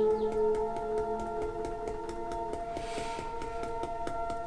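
Fingertips tapping rapidly and lightly on the upper chest in a quick, even run of small clicks, over ambient music of long held tones.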